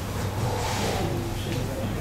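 Steady low electrical hum with a brief faint hiss about half a second in.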